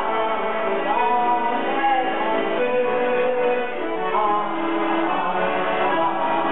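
A woman singing a French chanson live, her voice holding and bending long notes over an accordion accompaniment.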